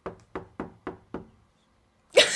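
Five quick knocks in a row, about three or four a second, stopping a little past the first second.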